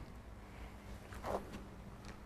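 Quiet hall room tone under the broadcast, with a faint steady low hum; a brief faint voice sounds about a second and a half in.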